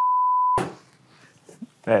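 A censor bleep: one steady pure beep tone replacing a spoken word, cutting off about half a second in, followed by quiet room tone.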